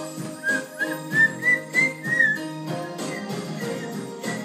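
Someone whistling a short tune of about six notes, climbing slightly, in the first half, over backing music with a steady beat.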